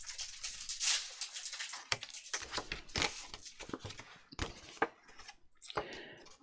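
Scissors snipping through folded paper to cut off a corner: a run of short, crisp snips, several of them about half a second apart, with paper rustling as the sheet is handled.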